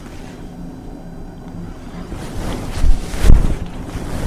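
A mercerized cotton saree being unfolded and swung out, the moving cloth pushing air past the microphone in two low whooshes about three seconds in.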